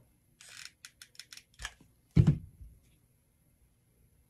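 Hot glue gun's trigger clicking in a quick series as glue is squeezed out, followed about two seconds in by one loud thump, likely the glue gun being set down on the table.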